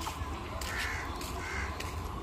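A crow cawing twice, less than a second apart, over a steady low rumble.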